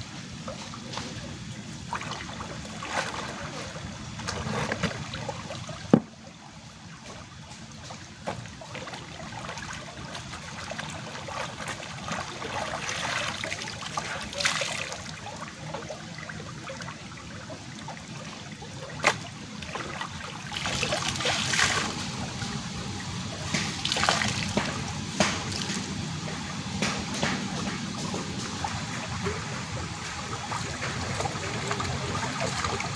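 Shallow stream water rushing steadily along a concrete channel, with intermittent splashing as clothes are dipped and scrubbed in it. A sharp click about six seconds in and another a little before twenty seconds.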